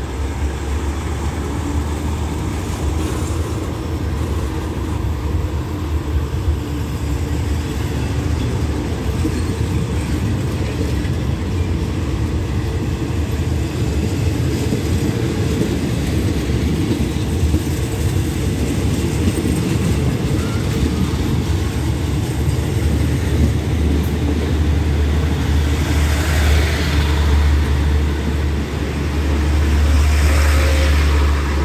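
Passenger train carriages rolling past on the rails as the train pulls out of the station, a steady rumble that grows louder as it gathers speed, loudest near the end.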